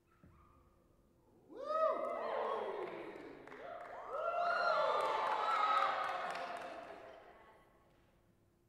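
Amplified string instrument played through live electronics: many overlapping tones that each swoop up and back down in pitch. They come in two swells, one about one and a half seconds in and a louder one about four seconds in, then die away near the end.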